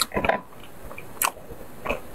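Close-up eating sounds: wet chewing and several short mouth smacks, loudest near the start.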